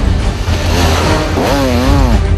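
Enduro dirt bike engine revving under loud background music, its pitch rising and falling near the end.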